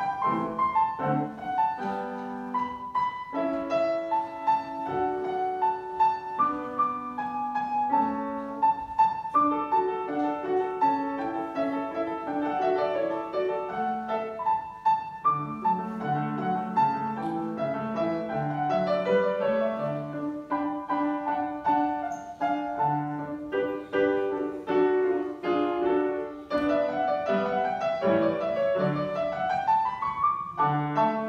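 Steinway grand piano played solo: a classical sonatina in continuous running notes, with a quick climbing scale run near the end.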